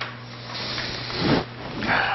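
Rubbing and brushing noise close to a microphone: a scraping swell from about half a second in that peaks with a low thump a little past one second, then another brief rub near the end.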